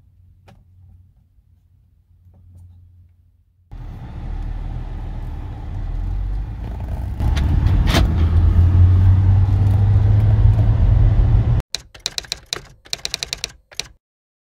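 Saab 9-3 pulling away, its engine and road noise building inside the cabin, with a single sharp clunk about four seconds after it sets off: the central locking engaging automatically at drive-off speed (13 km/h). A quick run of sharp clicks and rattles follows near the end.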